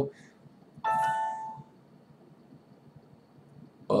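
A single Windows system alert chime: one short ding of a few steady tones that starts suddenly about a second in and fades within under a second.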